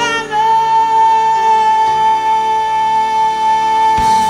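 A woman's voice holds one long, steady high note over a live band's sustained chord.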